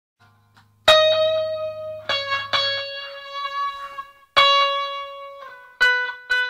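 Solo guitar playing a slow line of single plucked notes, each left to ring out, stepping down in pitch. A low hum sits under the first few notes.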